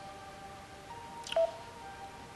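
Soft background music of quiet held notes under a reading pause, with one brief click a little past halfway.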